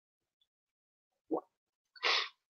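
Near silence, broken once by a single short, soft pop a little past the middle.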